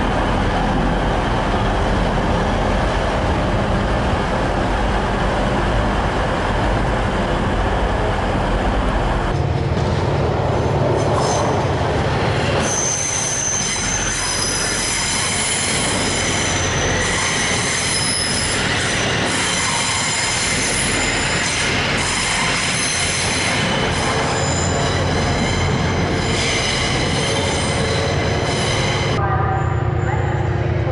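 Trains running at station platforms, cut between several takes: first a low steady engine rumble from a TransPennine Express unit, then, after a cut, trains passing with high thin wheel squeal over the steady rumble of the running train.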